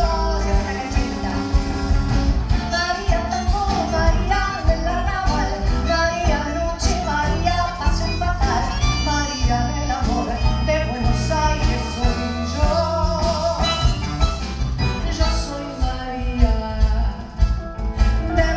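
A woman singing a tango with vibrato. A live band accompanies her on piano, electric bass, drums, bandoneon and acoustic guitar.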